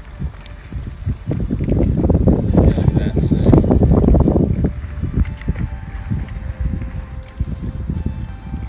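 Wind buffeting the microphone: low-pitched noise that builds about a second and a half in, is strongest for the next three seconds, then eases to a lower level.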